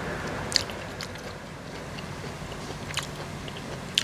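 A person chewing a mouthful of food close to the microphone, with a few sharp wet clicks spread through the chewing.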